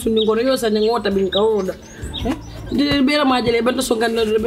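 Speech: a woman talking, with a short pause about halfway through.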